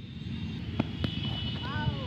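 Outdoor noise and low wind rumble, with a faint knock of the cricket bat meeting the ball about a second in. A short call from a voice follows near the end.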